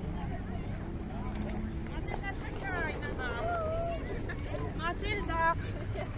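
Passersby talking in a crowd, with a high voice calling out in sing-song glides about two seconds in and again near the end, over a low rumble.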